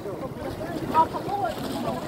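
Indistinct chatter of people talking, with wind rumbling on the microphone and one brief louder voice about a second in.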